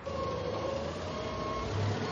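Steady engine hum of vehicles at a car factory, with a faint steady whine over it for the first second or so. Near the end a lower, louder rumble comes in: a forklift's engine.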